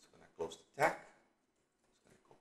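Two short wordless voiced sounds about half a second apart, a brief murmur or hum from a man.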